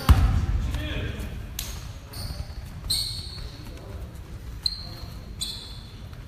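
Basketball game on a gym court: a hard bounce of the ball right at the start, then about five short, high-pitched squeaks of sneakers on the hardwood floor, over the low hum of the hall.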